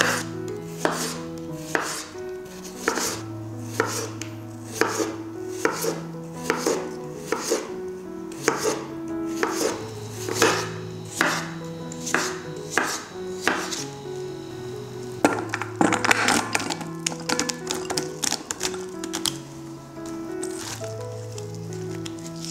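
Chef's knife slicing peeled cucumbers against a bamboo cutting board: evenly spaced cuts a little more than once a second, quickening into a fast run of cuts past the middle. Background music with sustained notes plays underneath.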